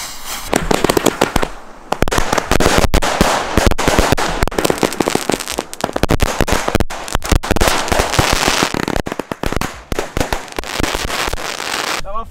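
A firework fuse hissing as it is lit, then consumer firework batteries (cakes) firing: a dense, fast stream of launch shots and crackling bursts for about ten seconds.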